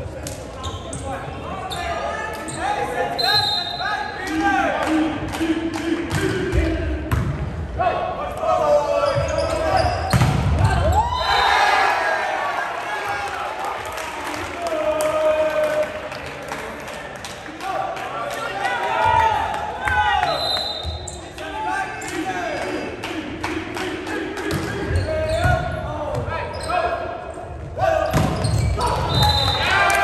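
Indoor volleyball rally in a gymnasium: players and onlookers shouting and calling throughout, with the dull thuds of the ball being hit and bouncing on the hardwood floor.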